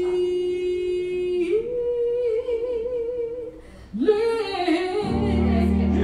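Gospel praise-and-worship singing: a solo voice holds long notes, the first steady, the next a step higher with vibrato, then starts a new phrase. About five seconds in, a sustained keyboard chord comes in underneath.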